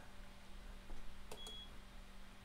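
A few faint keyboard key clicks, then a short, high single-tone beep from the IBM 3488 InfoWindow display station about a second and a half in.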